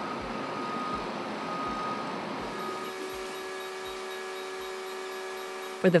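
A vehicle's reversing beeper sounding over a steady background haze of shipyard noise. About halfway through, a steady low tone with several overtones takes over.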